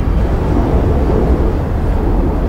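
A loud, steady deep rumble of a train running along the tracks at a station platform, with no clear tones in it.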